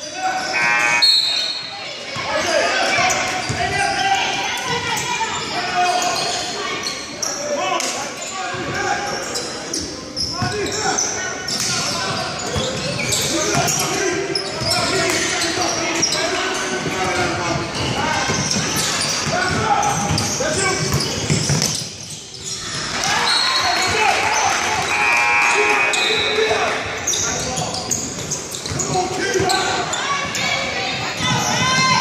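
Echoing sounds of a basketball game on a hardwood gym floor: the ball bouncing repeatedly amid players' and spectators' voices, with a brief lull about three-quarters of the way through.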